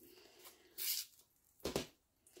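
Quiet handling noises: two brief soft rustles, about a second apart, as a pincushion and squares of cotton fabric are picked up and moved on a cutting mat.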